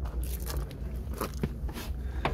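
Handling noise from a camera being moved around inside a small car: irregular clicks, rustles and scrapes over a low rumble.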